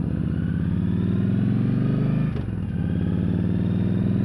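Motorcycle engine accelerating under way, heard from a helmet-mounted camera. The engine note climbs, dips briefly about two and a half seconds in at an upshift, then climbs again.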